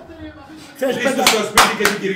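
Men's excited voices, with three sharp hand claps in the second second.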